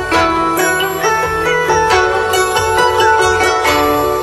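Guzheng (Chinese plucked zither) played with finger picks: a flowing melody of plucked, ringing notes, some of them bent upward with small slides.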